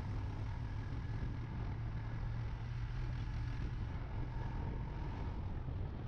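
Motorcycle engine running steadily while riding at an even speed, a low hum with wind and road noise over it.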